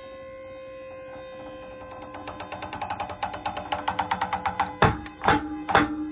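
Prusik hitch gripping a single-strand climbing rope under a rising pull-test load, with a steady hum beneath. About two seconds in it starts ticking, the ticks coming quicker and quicker, and near the end they become loud sharp snaps as the prusik begins slipping along the rope in stick-slip jerks.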